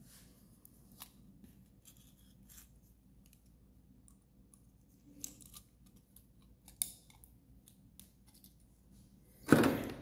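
Faint, scattered light clicks and rustles of small electronic components and a hand tool being handled on a tabletop, with a few sharper clicks about one, five and seven seconds in.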